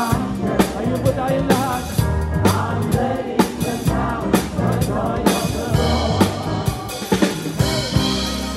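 Live band music with a drum kit close by, keeping a steady beat with a strong hit about once a second, over keyboards, guitar and a choir singing.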